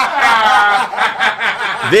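Men laughing and chuckling at a joke, loud and close to the microphones.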